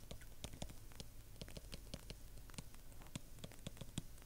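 Stylus tapping and scratching on a tablet screen during handwriting: faint, irregular ticks, a few each second.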